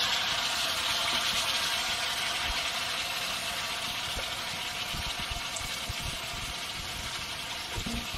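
Vegetables frying in a wok over a wood fire, a steady sizzle that slowly fades, with a soft knock or two near the end.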